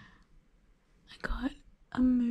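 A woman's voice: a short, soft murmured sound about a second and a quarter in, after a near-quiet start, with the start of another voiced sound at the very end.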